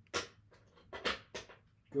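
Casino chips clicking together as a handful is set into a chip rack: three short, sharp clacks, one just after the start and two about a second in.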